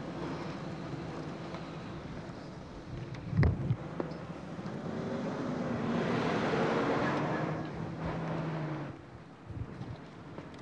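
Street traffic noise with a vehicle passing, swelling about six to eight seconds in and then fading, with wind on the microphone. A single knock sounds about three and a half seconds in.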